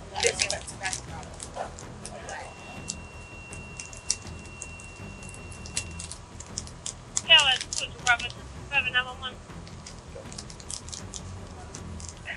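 Light handling noise: scattered clicks and rustles, densest in the first second, as a small tobacco package and other items are handled. A faint steady high beep runs for a few seconds early on, and two brief snatches of voice come near the middle.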